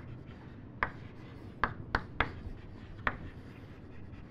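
Chalk writing on a blackboard: about five sharp taps of the chalk striking the board, with faint scratching between them.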